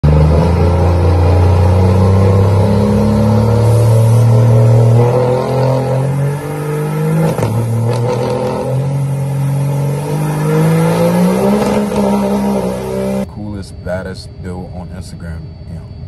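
A lifted Dodge Ram 2500's Cummins inline-six diesel held at high revs through a burnout, its pitch stepping up and down as the throttle changes, over a steady hiss of spinning tyres. It cuts off abruptly about three seconds before the end, and a man talking follows.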